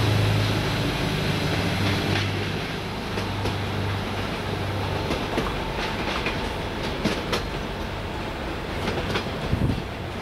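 Arriva Spurt (Stadler GTW) diesel multiple unit running past and away along the track: its diesel engine hum fades over the first half. Wheels clack over rail joints and points as it recedes.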